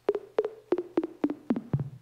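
GrooveRider GR-16 synth app on an iPad played from its pads in keyboard mode: a quick run of about a dozen short notes, each with a click at the start, stepping down in pitch.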